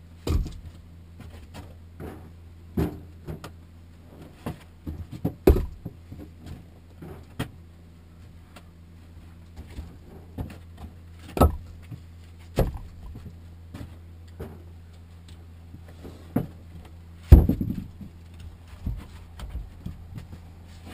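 Firewood rounds being unloaded and stacked, knocking against each other and against the wooden floor of the shed. The knocks are irregular, one every second or two, and the loudest comes about seventeen seconds in.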